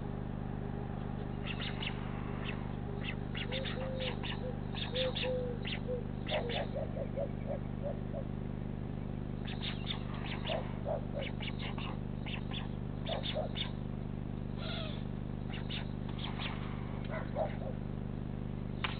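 Small birds chirping in quick clusters of short, high notes, with a few lower short calls in between, over a steady low electrical hum from the camera's microphone.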